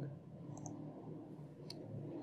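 A few faint clicks from a computer mouse and keyboard, with a pair about half a second in and a single one near the end, over a low steady hum.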